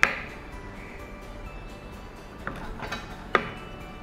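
A kitchen knife cutting the ends off a papaya and knocking against a wooden cutting board: a sharp knock right at the start, a faint one about two and a half seconds in and another sharp one a little past three seconds. Soft background music runs underneath.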